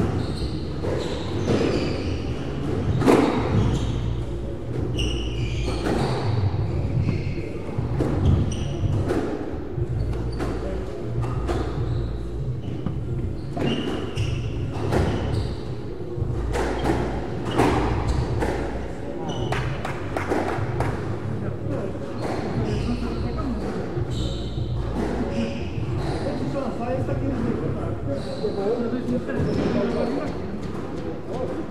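Squash rally: the ball cracks off rackets and smacks the front and side walls again and again, with short squeaks of court shoes on the wooden floor, echoing in the enclosed court. A steady low hum runs underneath.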